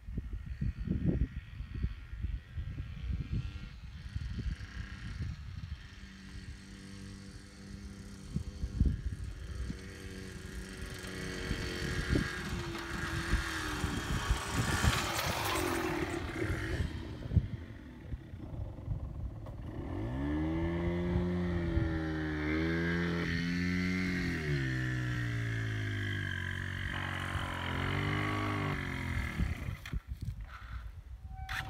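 Yamaha TDR 125 motorcycle's two-stroke single-cylinder engine, ridden around the camera: faint at first, swelling past about halfway, then close and loud in the second half, its pitch rising and falling as the revs go up and down. Wind rumbles on the microphone in the first half.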